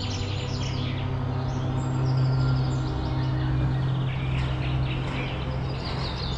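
Small birds chirping repeatedly in short high notes, over a low, steady held note of background music.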